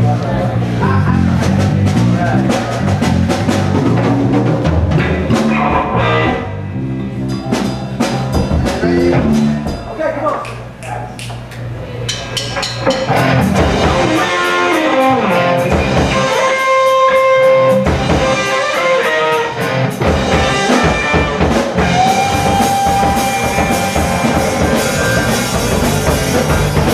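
Amplified rock band playing live: electric guitars, bass and drum kit. The playing thins out for several seconds in the middle, then the full band comes back in with held guitar notes.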